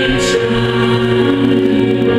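Gospel music: a choir singing long held notes.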